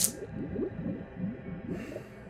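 Soundtrack and sound effects of an anime episode: a sharp hit right at the start, then a string of short sliding tones, and a swish near the end.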